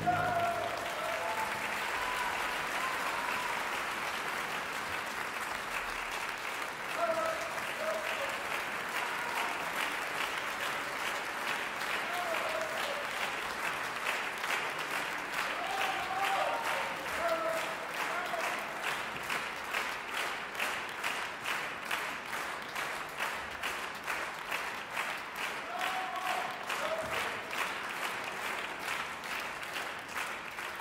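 Theatre audience applauding at the end of a ballet solo, with scattered shouts from the crowd. Later on, the clapping falls into a steady unison rhythm.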